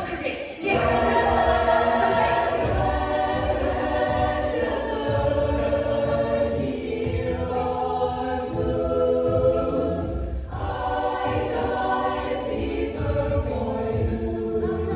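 Mixed-voice a cappella group singing full close-harmony chords with vocal percussion ticking on top, after a brief break about half a second in.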